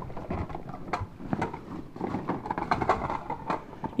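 Hard plastic Nerf blasters knocking and clattering against each other as a hand rummages through a bag full of them, with irregular clicks and knocks.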